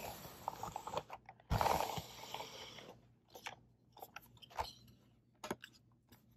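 ChomChom reusable pet hair roller being rolled over a quilted fabric futon cover, its roller brushing against the fabric in uneven strokes as it picks up cat fur. The rolling stops about three seconds in, followed by a few light clicks from handling the plastic roller.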